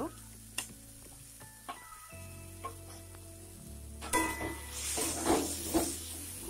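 Spiced tomato-and-chilli masala frying in oil in a wok, with a few light taps as garam masala powder is tipped in. From about four seconds in, a metal spatula stirs and scrapes it round the pan, louder, with sizzling.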